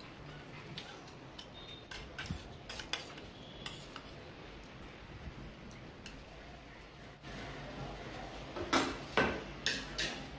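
A fork clicking and scraping against a disposable plate of fried snack, in scattered light taps. A few louder knocks come near the end.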